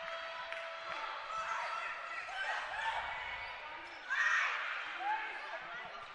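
Sounds of an indoor volleyball rally on a hardwood court: sneakers squeaking briefly on the floor and the ball being played. A short louder burst comes about four seconds in.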